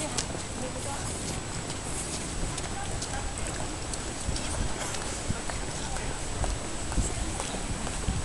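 Footsteps on pavement, irregular clicks, with low thumps of a handheld camera being carried while walking, over a steady background hiss.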